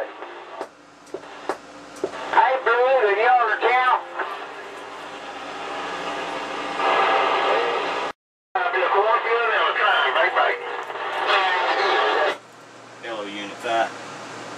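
CB radio receiving distant skip stations: voices too weak and garbled to make out come and go through static hiss, with a few sharp clicks early on. The audio drops out completely for a moment about eight seconds in.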